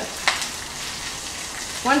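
King oyster mushrooms and ginger-garlic-onion paste frying in margarine and oil in a clay pot: a steady sizzle as the mushrooms give up their moisture. A silicone spatula makes one brief scrape about a quarter second in.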